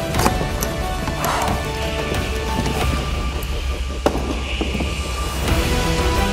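Produced machine sound effects: a low steady hum under held electronic tones, with clacks and a whoosh about a second in and a sharp knock about four seconds in, as music builds near the end.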